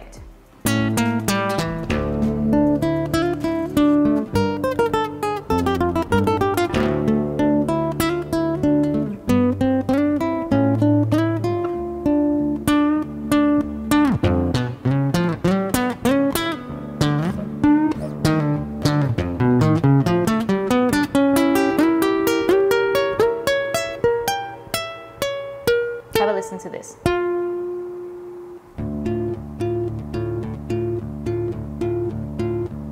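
Fingerpicked acoustic guitar arpeggios with a man singing in falsetto over them, a slight compressed creak at the top of his falsetto notes.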